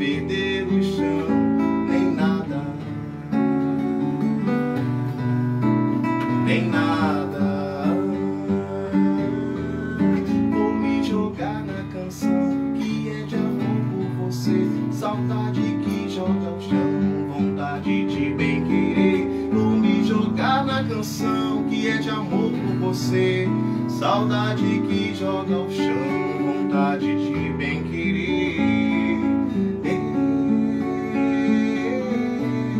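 A man singing a slow song over his own acoustic guitar, played live into a close microphone.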